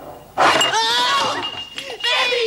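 A glass tumbler shattering suddenly about half a second in, followed by high-pitched shrieking from women's voices.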